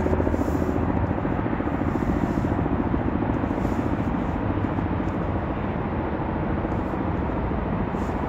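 A steady, loud rumbling noise that runs unbroken, with no clear beat or pitch change.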